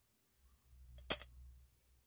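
A single short, sharp high-pitched click or clink about a second in, over a faint low hum.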